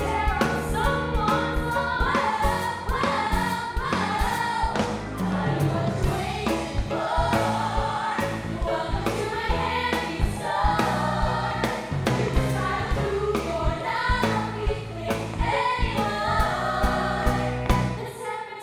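Three female singers singing a pop-rock show tune together at microphones, over backing music with a bass line and a steady beat.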